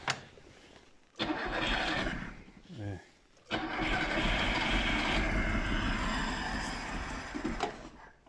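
Lada 2105's carbureted engine being cranked on the starter twice: a short try of under two seconds, then a longer one of about four seconds that dies away near the end. The engine is hard-starting; the owner blames a carburetor that isn't working right and a leaking accelerator pump.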